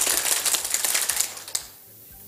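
A small group of people clapping in a room, the applause dying away about one and a half seconds in.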